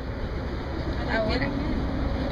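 A steady low rumble of background noise, with a brief word spoken about a second in.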